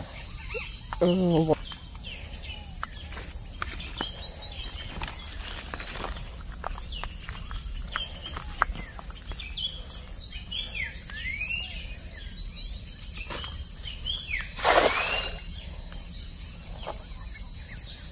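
Birds chirping steadily, with scattered footstep clicks, then about fifteen seconds in a loud splash as a thrown cast net lands on the creek water.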